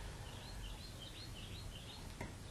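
Faint chirping of a small bird: a quick run of about ten high chirps over a low, steady room hum.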